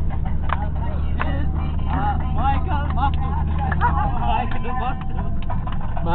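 Van engine and road noise droning in the cabin, with voices chattering over it; the low engine tone changes about four seconds in.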